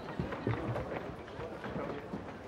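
Footsteps of several people walking and shuffling into place, with indistinct chatter.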